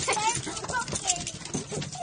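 Excited pet dogs whining for treats, with their claws clicking on wooden deck boards.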